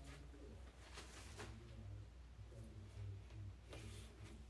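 Near silence: quiet room tone with a faint low hum and a few soft, faint ticks.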